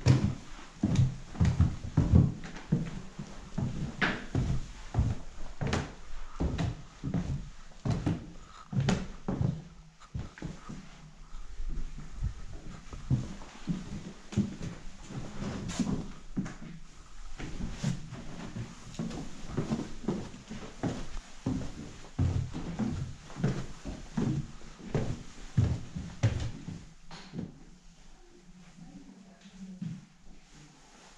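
Footsteps thudding on old wooden stair treads and floorboards, a few a second and uneven, easing off near the end. Music plays underneath.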